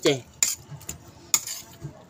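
A metal spoon clinking against a plate: two sharp clinks about a second apart, with a few lighter taps between.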